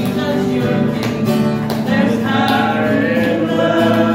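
Gospel singing with an acoustic guitar strumming chords along.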